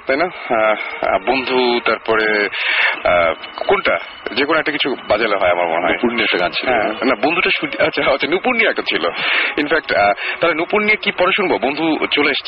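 Continuous speech from a radio talk show, with no other sound standing out.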